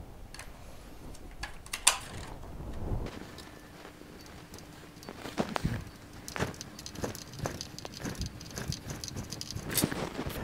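Scattered plastic clicks and rattles from handling a plastic radio-controlled toy car: batteries pushed back into the compartment, the cover snapped on and its screw turned in with a small screwdriver.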